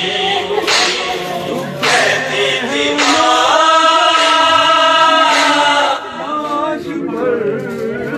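Men's voices singing a mournful Urdu lament (nauha) in chorus without instruments, with a long held note in the middle.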